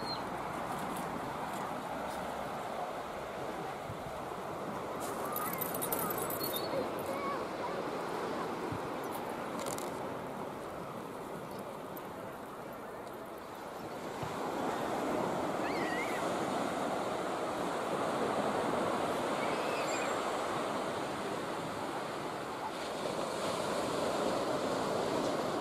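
Surf washing onto a sandy beach: a steady wash of waves that grows louder about halfway through.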